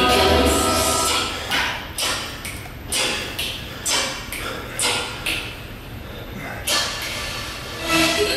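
Background music fades out about a second in. After that comes a series of short, forceful exhalations, roughly one every half-second to second, as a man pushes through repetitions of a seated dumbbell shoulder press.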